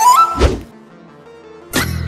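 Comedy sound effects: a whistle-like tone stepping upward in pitch, a single heavy thunk about half a second in, then another sudden hit near the end.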